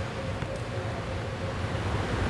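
Steady low roar of a glass-blowing hot shop: the gas-fired furnace and glory hole burners running, with ventilation noise and a faint steady hum.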